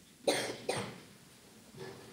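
A person coughing twice in quick succession, about half a second apart, near the start.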